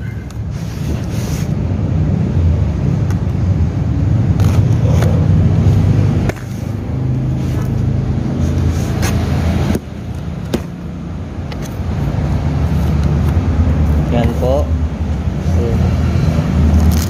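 A cardboard box being slit open with a small blade and its flaps pulled back: scraping and short clicks of cardboard and tape, over a steady low rumble.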